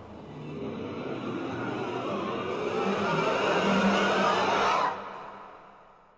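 A rushing, noisy swell on the trailer soundtrack that builds steadily louder for nearly five seconds. It then drops away sharply and fades out.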